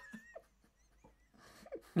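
The faint, thin, high-pitched tail of a man's wheezy laugh fades out just after the start. A quiet pause follows, and fresh laughter begins at the very end.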